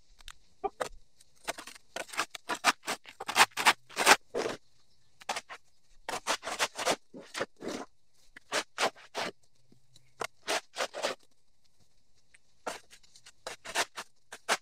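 Shovel blade scraping packed dirt off a buried concrete sidewalk, in runs of short strokes, several a second, with pauses between the runs.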